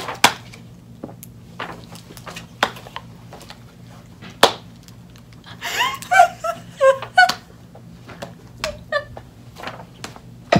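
Two women laughing hard in squeaky, breathy bursts, with a few sharp clicks in between. The loudest, highest and most wavering laughter comes a little past the middle.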